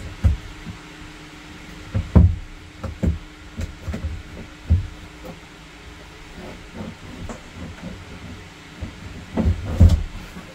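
Hollow plastic fresh-water tank bumping and scraping against the sides of its compartment as it is wrestled up and out. The knocks and thumps are irregular, loudest about two seconds in and again just before the end.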